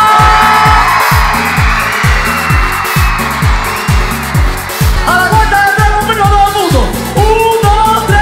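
Live pop music played loud, driven by a deep kick drum that drops in pitch on each hit, about two beats a second, with a male lead vocal. The singing drops out for a few seconds in the middle, where a hissing swell fills the gap, and comes back about five seconds in.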